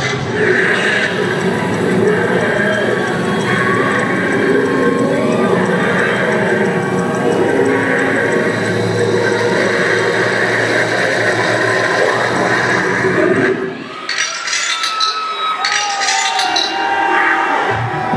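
Loud concert-hall mix of music or sound effects over the PA with crowd noise. It drops sharply about fourteen seconds in, and gliding tones and short sharp hits follow.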